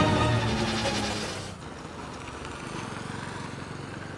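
Background music of sustained notes stops abruptly about one and a half seconds in, leaving a motorcycle engine running steadily at a lower level.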